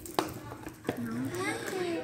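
Two short knocks from objects being handled, about a quarter second and one second in, followed by quiet murmured speech.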